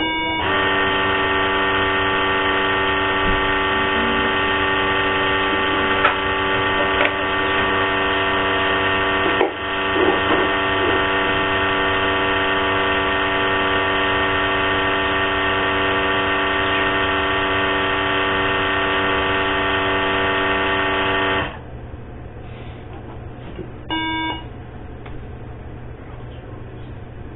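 Breath-alcohol test instrument sounding a steady electronic buzzing tone for about twenty seconds, then cutting off suddenly, followed a couple of seconds later by one short beep.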